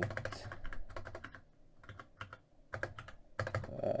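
Typing on a computer keyboard: quick runs of keystrokes with a brief lull about halfway through.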